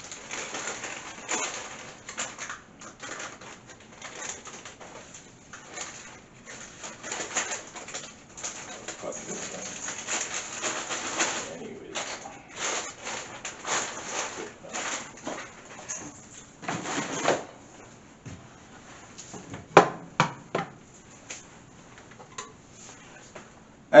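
Off-camera rustling and clatter of packages being put away in a kitchen, irregular and continuous for most of the stretch, followed by a few sharp knocks near the end.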